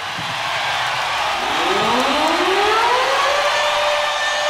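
Rock-concert crowd cheering, with an amplified sustained note from the stage that glides upward over about two seconds and then holds steady, building toward the start of the song.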